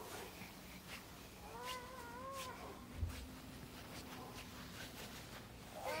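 A young child's short wordless cry about two seconds in, rising and falling, and a rising squeal starting right at the end; between them faint crunching steps in snow and one low thump.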